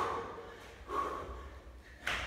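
A man breathing hard during a set of jumping burpees, with one forceful breath about a second in. Body movement on the gym floor is heard at the start.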